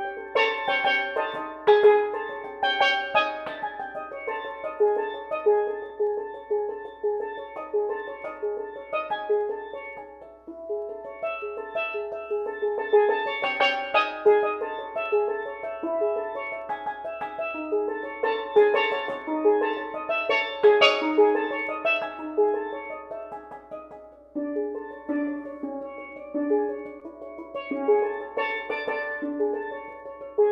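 Steel pans played solo with mallets: a dense stream of quick pitched notes that swells and eases, dipping quieter about ten seconds in and again around three quarters of the way through.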